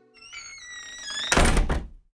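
Edited-in outro sound effect: a cluster of tones glides slowly downward for about a second, then a loud thud with a deep low end hits and dies away within about half a second.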